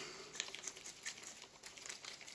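Faint rustling and small clicks of gloved hands handling a metal airgun regulator tube and its fittings.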